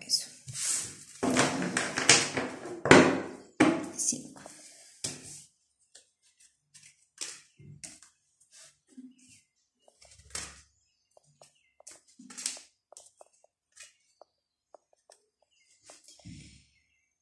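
A deck of oracle cards shuffled by hand for about five seconds, a dense papery rustle. After that come scattered short snaps and light taps as single cards are drawn and laid on the tabletop.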